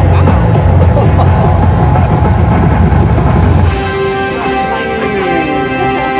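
Slot machine bonus music and game sounds during free spins, dull and bass-heavy for the first few seconds, then brighter from nearly four seconds in with steady held tones and a falling glide.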